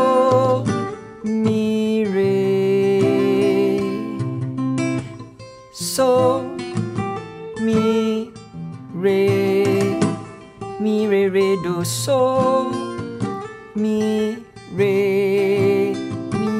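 Fingerstyle arrangement on acoustic guitar in F major, played back from a recording: a simple melody picked over bass notes, in phrases with short breaks between them.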